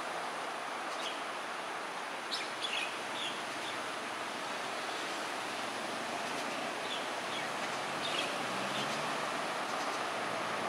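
Short, high bird chirps in small clusters, about two to three seconds in and again around seven to eight seconds, over a steady background hiss of outdoor noise. A low hum comes in near the end.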